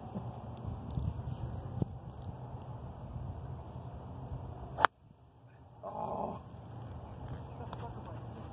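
A golf club strikes a ball off the tee: one sharp crack about five seconds in, the loudest sound here, over a steady low outdoor rumble.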